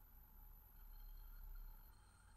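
Near silence: faint room tone with a low hum and a thin, steady high-pitched whine.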